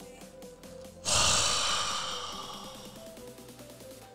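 A long, loud sigh blown into the microphone about a second in, starting suddenly and fading away over about two seconds, over background music.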